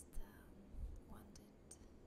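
A woman's soft whispering and mouth sounds close to the microphone, with a few sharp lip and tongue clicks; the loudest click comes just after the start.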